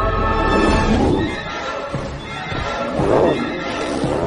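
Cartoon character voices laughing in wavering, pitched cries, once about a second in and again near three seconds, over background music.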